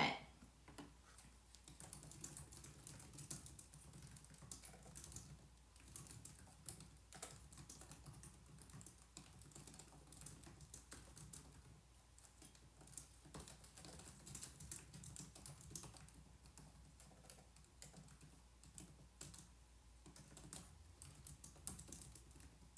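Faint typing on a laptop keyboard: quick key clicks in short runs with brief pauses.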